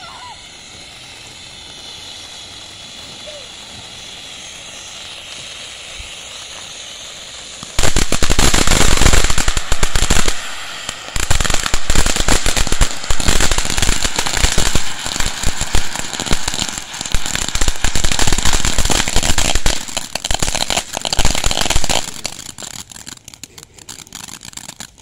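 Ground fountain firework spraying sparks with a steady hiss, then about eight seconds in breaking into loud, dense crackling. The crackling runs on with a brief lull just after ten seconds and dies away near the end as the fountain burns out.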